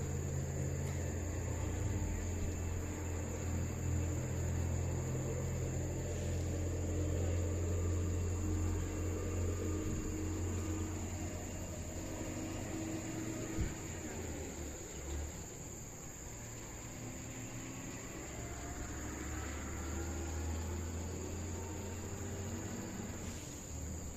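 Insects trilling in a steady, unbroken high-pitched chorus over a low rumble.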